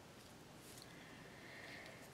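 Near silence: faint room tone, with a faint thin steady high tone during the second half.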